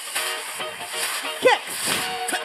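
Upbeat 80s-style workout music with a steady beat at about 136–140 beats per minute, with a woman calling "kick" once about one and a half seconds in.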